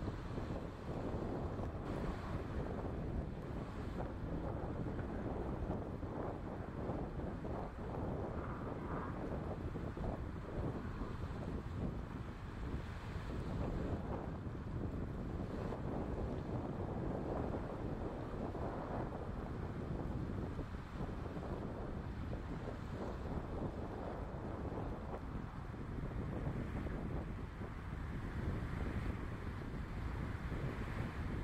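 Strong wind buffeting the microphone, with water rushing and splashing as sailing dinghies and windsurfers plane through choppy, wind-blown waves. The sound is a steady, gusty rush that rises and falls throughout.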